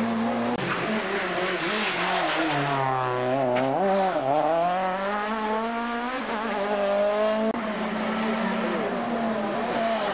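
Two-litre kit-car rally engines revving hard at full throttle, their pitch climbing and dropping through gear changes as the cars accelerate and brake. The sound breaks off abruptly twice as one car gives way to the next.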